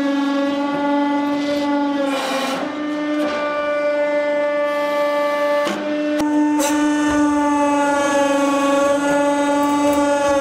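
Hydraulic press pump running under load with a steady whine while the ram crushes a solid steel pétanque ball. The whine sags in pitch with a short burst of noise about two seconds in and again near six seconds.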